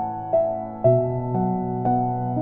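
Slow relaxation music: a keyboard strikes single notes about twice a second, each left to ring, over a held bass note.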